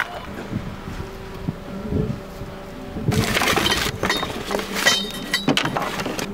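Loading and handling noise as computer towers are shoved into a car crammed with cables and loose gear: a few dull knocks, then, about halfway through, a loud burst of clattering and scraping, followed by a shorter rattle.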